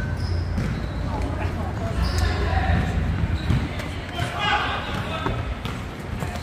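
A run of dull low thumps, with faint voices later on.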